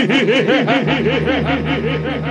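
A man's drawn-out theatrical laugh over the stage microphone, a rapid run of rising-and-falling "ha" syllables about five a second that weakens toward the end. A low steady drone sits underneath, deepening about a second in.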